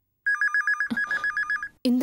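Desk landline telephone ringing: one electronic ring of about a second and a half, a fast warble between two high tones, starting a quarter-second in.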